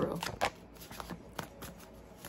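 A deck of tarot cards being shuffled by hand: a string of short, irregular card clicks and flicks.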